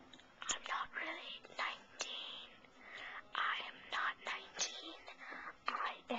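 A person whispering in short breathy phrases, with no voiced tone.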